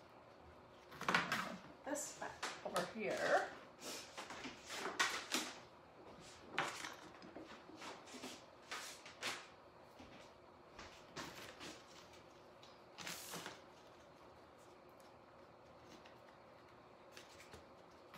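Faint, irregular rustles and knocks of hands handling things at a craft table, likely a sheet of card being waved to cool hot glue and items being moved, with one short spoken word about three seconds in.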